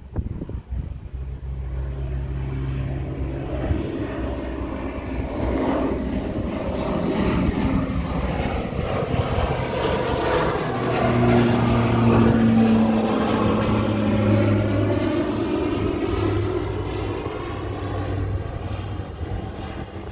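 Light propeller plane taking off and climbing overhead. The engine drone builds to its loudest about halfway through, then slowly fades as the plane climbs away.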